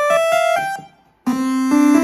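Nord Stage 3 synth engine sounding a raw sawtooth-wave oscillator with effects off and a bright, buzzy tone: a quick rising run of single notes, a brief gap, then a chord built up note by note from about halfway through and held.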